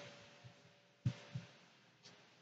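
Two soft, low thumps about a third of a second apart, over faint room tone, the sort of knock made by handling a sheet of paper held up against a phone camera.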